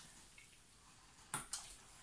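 Hands kneading homemade slime in a plastic tub, faint squishing, with one short sharp squelch about a second and a half in.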